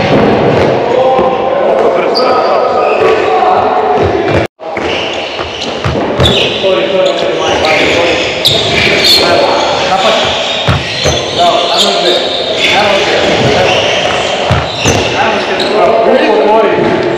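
Handballs bouncing and thudding on the wooden floor of a sports hall during shooting practice at a goalkeeper, with voices calling throughout. The sound drops out briefly about four and a half seconds in.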